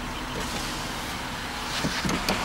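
Electric soft-top mechanism of a Porsche 911 (991) Cabriolet running as the roof closes, a steady hum heard from inside the cabin.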